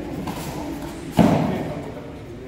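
A single loud thump about a second in, the impact of a karate technique being demonstrated on a partner, fading over about half a second.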